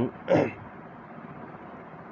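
A man clears his throat once, a short rasping burst with a falling pitch, followed by a steady low background hiss.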